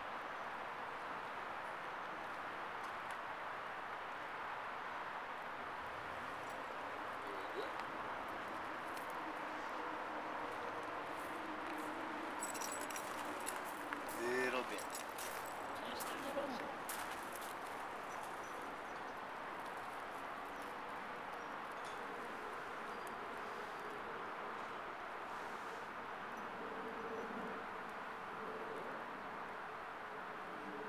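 Faint, indistinct voices over a steady outdoor background hiss, with a few light clicks and a short rising sound about halfway through.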